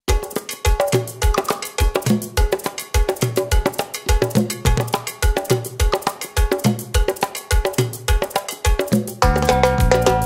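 Latin dance music starting with a percussion intro: quick hand-percussion strokes over a steady low beat, with the full band and bass coming in about nine seconds in.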